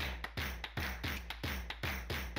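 Outro music: a fast, even percussive beat of about four to five hits a second over a steady low bass.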